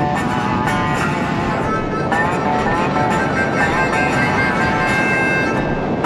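Background music: an instrumental track with held notes that change every second or so, over a low, steady rumble.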